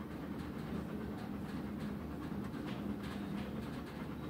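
A dog panting steadily with its mouth open, over a steady low hum.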